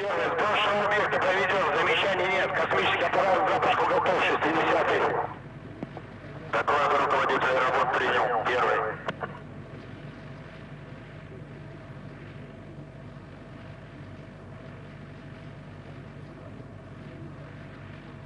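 Speech heard narrow, as over a radio loop: a long stretch of talk, then after a short pause a shorter one. After that comes a steady faint hum with no talk.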